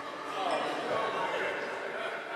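A man's voice, faint and off-microphone, carried by the reverberation of a large sanctuary as the preacher turns away from the pulpit microphone.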